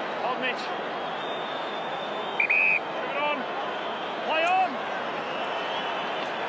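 Steady noise of a large stadium crowd during a football match. A short, shrill whistle blast sounds about two and a half seconds in, and a couple of voices call out about three and four and a half seconds in.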